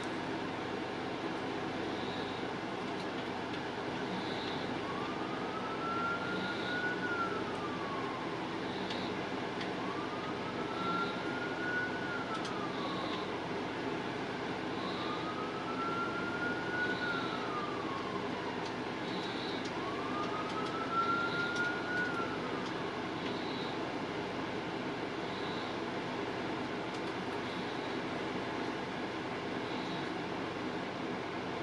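A siren wailing in four slow rise-and-fall cycles, starting about five seconds in and stopping a few seconds after the middle, over a steady background hiss.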